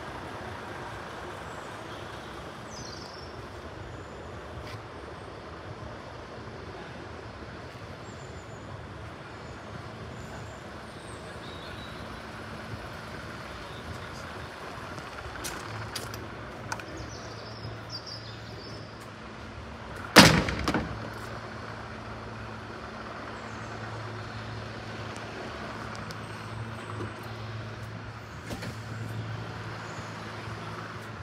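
A 2003 JCB 2CX Airmaster backhoe loader's diesel engine idles steadily, with a single loud clunk about twenty seconds in.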